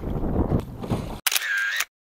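Wind buffeting the microphone over choppy water, cut off abruptly about a second in by a short camera-shutter sound effect.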